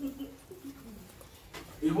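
A lull in a man's talk, with two short, faint low hums in the first second; his speech starts again near the end.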